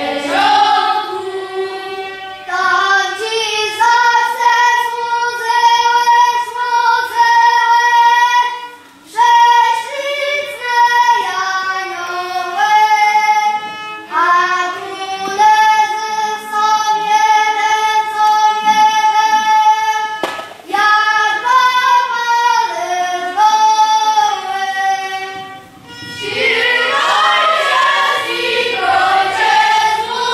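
A children's choir singing a slow melody in long held notes, with short breaks about nine seconds in and again near the end.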